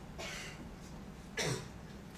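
A single short cough about one and a half seconds in, preceded by a faint breath, over low room noise.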